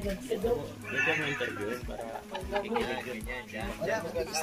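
Several people talking over one another, with a high, wavering voice rising above the chatter about a second in.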